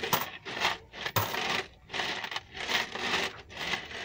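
Coins rattling and jingling inside an orange plastic coin bank as it is shaken in repeated bursts, with coins spilling out onto cardboard.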